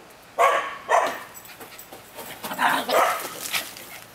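Small dog barking in play: two loud, sharp barks about half a second apart near the start, then more barking in the second half.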